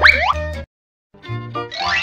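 Cartoon sound effect that slides quickly up in pitch, over background music. About half a second of dead silence follows, and the music comes back with a rising sweep near the end.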